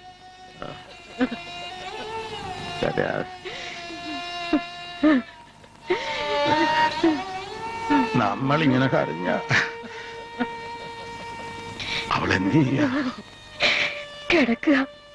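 Film dialogue in Malayalam over a background score of long, held melodic notes.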